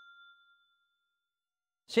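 The fading tail of a bell-like chime: a few steady high tones dying away over about a second, then silence. A man's voice starts right at the end.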